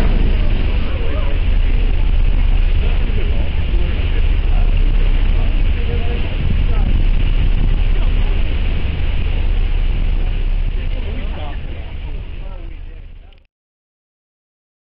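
Wind buffeting the microphone on the open bow deck of a ferry under way: a loud, steady rumble with hiss that fades out near the end.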